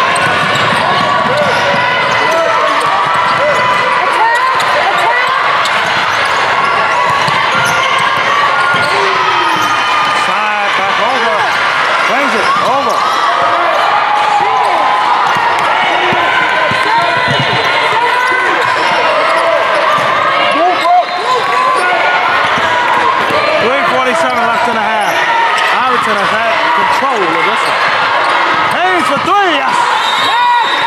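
Basketball dribbled on a hardwood gym court, with players and spectators shouting in a steady din of gym noise.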